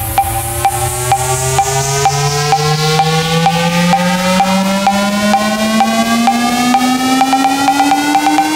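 Minimal techno track building up: a synth tone rises steadily in pitch over fast, even ticking percussion and a repeated higher note, with a hissing sweep falling in pitch during the first half.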